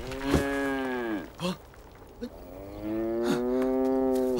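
A water buffalo lowing: two long moos, the second starting about three seconds in, each held on one pitch and then dropping away at the end.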